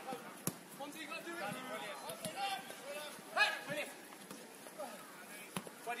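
Football being kicked with two sharp thuds, one about half a second in and one near the end, among scattered shouts from players and spectators. A louder shout comes about halfway through.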